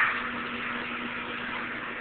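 Steady hiss and hum of an air blower on an air-tube exhibit, with a faint constant low tone.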